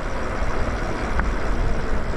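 Steady wind rush on the microphone and tyre-on-road noise from a Lyric Graffiti e-bike riding along a paved street, with a brief faint tone about a second in.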